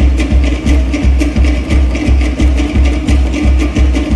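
Fast Polynesian drum music accompanying the dance: a deep drum beat about twice a second under quick, sharp percussive clicks.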